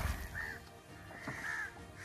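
Water settling after a ring-net crab trap splashes into the backwater, dying away in the first half-second. Then two faint bird calls follow, about a second apart.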